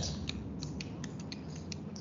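A run of light, irregular clicks, about ten in under two seconds, over a faint steady low hum.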